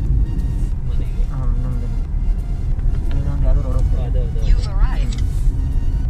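Steady low rumble of a car's engine and tyres on the road, heard from inside the cabin while driving along a highway.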